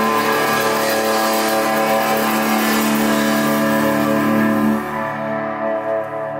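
Rock band holding one sustained chord on distorted electric guitars and bass, with cymbals washing over it, ringing steadily until it drops away sharply near the end.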